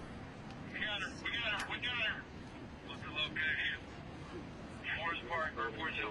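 A recorded police radio transmission played back through a small loudspeaker: thin, tinny voices in short bursts of radio talk over steady background hiss.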